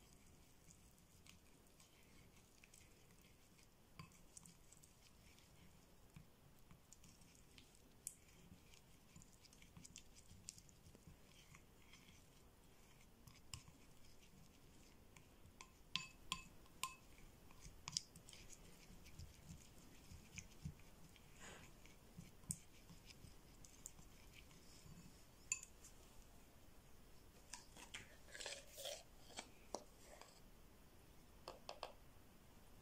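Faint scraping and light clicking of a small plastic spoon stirring a thick paste in a ceramic bowl, with a few sharper clicks, a cluster of them near the end.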